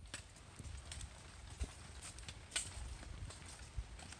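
Hiking boots stepping on a wet, rocky mountain path: uneven sharp clicks and scrapes of soles on stone, about two a second, over a low rumble of wind and handling on a phone microphone.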